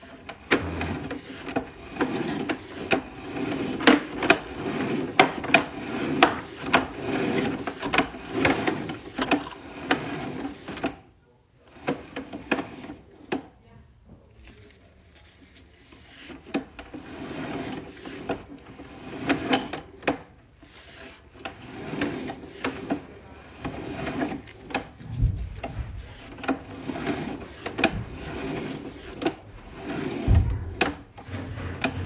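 Sewer inspection camera's push cable being pulled back by hand and coiled into its reel: irregular rubbing and clattering with many small clicks. It drops out briefly a little past a third of the way through and runs quieter for a few seconds before picking up again.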